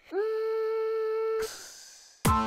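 A steady humming tone that slides up briefly at its start, holds one pitch for over a second and cuts off, followed by a faint fading hiss.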